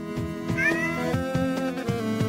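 A single synthesized cat meow about half a second in, over AI-generated background music with a steady beat.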